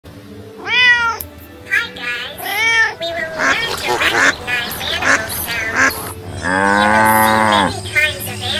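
A kitten meowing three or four short times, then many ducks quacking in quick succession, and near the end one long cow moo.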